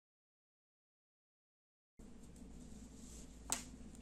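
Near silence: the sound is cut out entirely for about two seconds, then faint room tone with a single sharp click shortly before the end.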